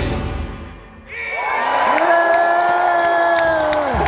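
Loud live rock band drops out in a stop-break. After a second's lull a held note slides up and sustains for about three seconds, with scattered cheers and claps from the crowd, until the band crashes back in together.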